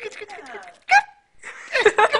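A person's voice making wordless cooing sounds and soft laughter, with a short, high-pitched call about a second in.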